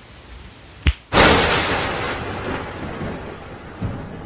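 A thunder sound effect. A sharp crack comes just before a second in, followed at once by a loud thunderclap that rolls on and slowly fades over the next few seconds.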